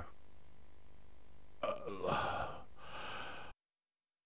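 A man's short, breathy gasp or sigh with a wavering pitch, over faint room hiss; the sound cuts off to dead silence near the end.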